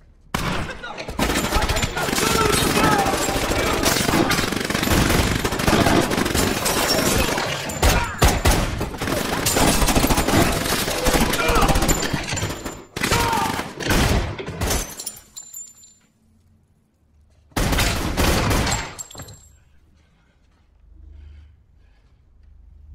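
Heavy, sustained gunfire: rapid automatic shots packed together for about fifteen seconds, with voices in among it, then a lull and a second short burst of fire near the end.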